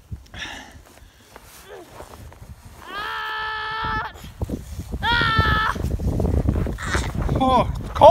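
A child's voice calling out in two long, held cries, about three seconds in and again about five seconds in, the second higher than the first, with shorter vocal sounds near the end. A low rumble of wind on the microphone runs underneath.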